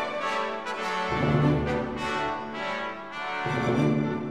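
Orchestral music with brass to the fore, changing chords about once a second.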